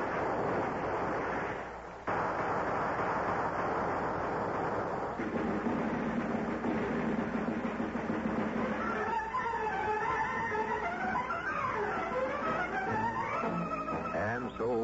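Radio-drama battle sound effects, a dense din lasting about five seconds, give way to an orchestral music bridge with bowed strings. The music starts as a held low chord and turns into a moving melody from about nine seconds in.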